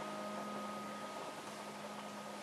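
The last chord of a children's choir song with piano dying away: faint held tones fade out about one and a half seconds in, leaving quiet room hiss.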